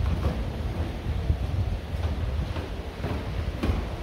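Low, fluctuating rumble of wind-like handling noise on a handheld camera's microphone as it is carried around a parked car, with a couple of faint knocks.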